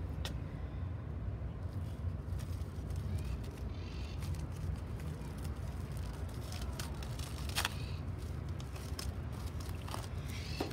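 Steady low background rumble with a few light clicks and rustles as small plastic bowls and plastic wrap are handled.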